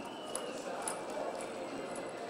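Hoofbeats of a horse loping on soft arena sand, with a few light ticks.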